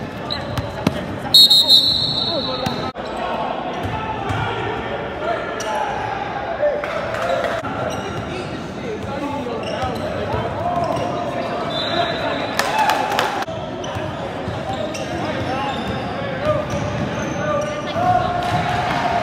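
Sounds of an indoor basketball game: a ball bouncing on the court and voices of players and spectators, echoing in a large gym hall. About a second and a half in, there is a short, high, shrill tone.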